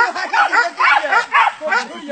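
Several men shouting and talking over one another, with a dog barking and yipping among the voices.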